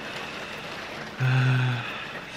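Steady hiss of rain, with a man's long, flat hesitation sound 'euh' about a second in.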